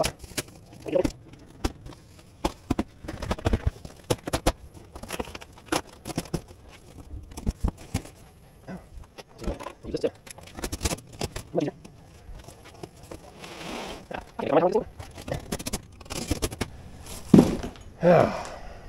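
A large cardboard shipping box being cut and torn open with a folding pocket knife: irregular scrapes, crackles and rips of the cardboard, mixed with knocks from handling the box.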